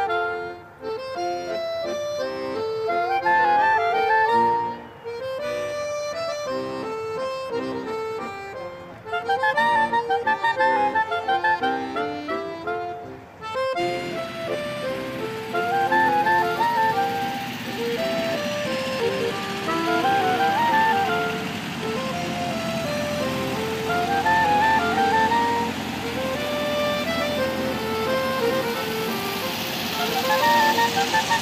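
Accordion music playing a lively, repeating melodic phrase. About halfway through, a steady background noise joins underneath the music.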